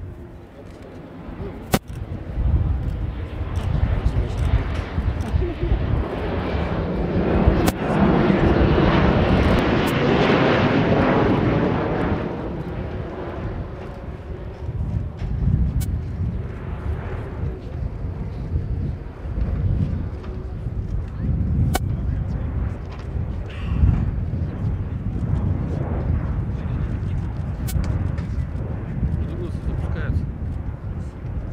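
Sukhoi Superjet 100's twin PowerJet SaM146 turbofan engines heard in flight, with jet noise swelling to a loud peak about eight to twelve seconds in. It then eases off to a lower, steady rumble as the airliner banks away.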